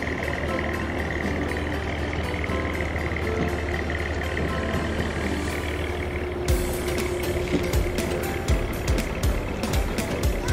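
Motor ferry boat's engine running with a steady low hum. About six and a half seconds in, a run of sharp knocks starts over it.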